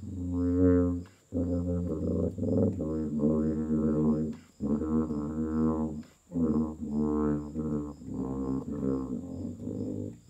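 Solo tuba playing a slow melody of low held notes, in phrases of one to three seconds broken by short breaths.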